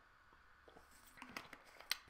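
A person drinking from a bottle: faint swallows followed by a few short wet mouth clicks and a lip smack, the sharpest just before the end.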